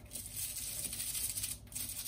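Small brush scrubbing the head of a golf wood in quick scratchy strokes, getting dirt out of the logo and grooves. A kitchen tap runs a thin stream into a stainless-steel sink underneath.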